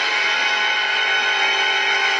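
A loud, steady held musical chord: a title-card sound effect.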